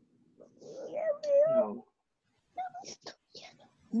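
Voices coming through a video call: a drawn-out, wavering call about a second in, then a few short murmured sounds near the three-second mark.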